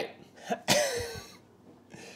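A man coughs once, a harsh, rasping cough with a voiced tail that falls in pitch, lasting under a second and starting about two-thirds of a second in.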